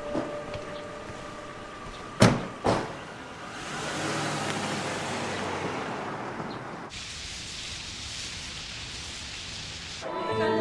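Car doors of a Mercedes-Benz sedan shutting twice, about half a second apart, a couple of seconds in. The car then pulls away, with a rising rush of engine and tyre noise that holds for a few seconds.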